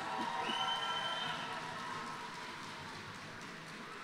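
Audience applauding, the clapping slowly dying away, with a few voices in the first second or so.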